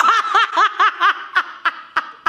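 A woman laughing hard: a rapid run of short, high 'ha' pulses that grow fainter and further apart toward the end.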